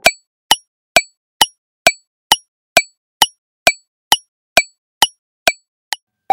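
Quiz countdown timer's ticking sound effect: short, sharp, evenly spaced clicks, a little over two per second.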